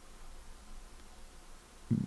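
A pause in a man's talk: faint steady room tone with a low hiss, and his voice starting again right at the end.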